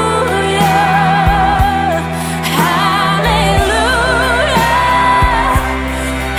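A young woman's solo voice sings long held notes with wide vibrato over sustained instrumental backing, in a slow ballad.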